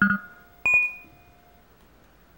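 Quiz-show sound effects: a short electronic beep right at the start, then about half a second later a bright chime that rings and fades over about a second, as the teams' true-or-false answers are revealed.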